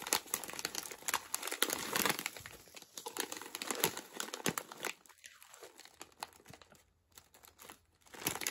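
Crinkling of a plastic popcorn bag being handled and turned over in the hands. The crackling is busiest in the first five seconds, then thins to a few faint rustles.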